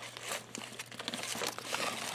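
A small cardboard toy box being handled and opened by hand, with irregular crinkling and rustling of the packaging.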